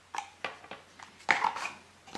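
A handful of light clicks and knocks: a small metal headphone-jack adapter and a USB cable being set down on a wooden tabletop. The loudest knock comes about halfway through.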